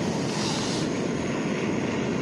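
Handheld butane gas torch burning with a steady rushing hiss as its flame is held against the side of a camping kettle to heat the water. A brief sharper hiss comes about half a second in.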